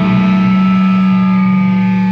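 Distorted electric guitar through an amplifier, holding a single chord that rings out steadily, with no drum hits under it.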